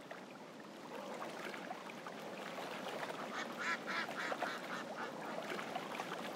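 Ducks quacking: a quick run of about six calls halfway through, over faint, steady background noise.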